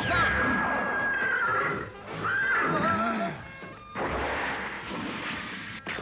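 Cartoon fight sound effects over dramatic music: a sudden crash at the start, then a horse whinnying about two seconds in.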